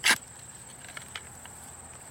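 A long-handled digging tool driven into garden soil while digging potatoes: one short, sharp crunch at the start, followed by a few faint scrapes and ticks of soil being worked.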